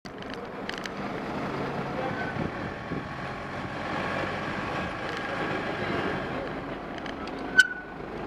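Steady road-traffic noise with a vehicle engine running close by, and a single sharp click with a brief ring a little before the end.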